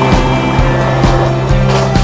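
Music soundtrack over the sound of skateboard wheels rolling on a street.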